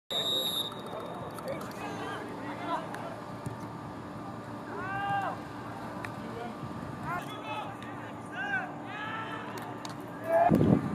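Outdoor soccer-match sound: a short, high referee's whistle in the first half-second, then players' shouts calling out on and off, at about 5 s and several times near the end.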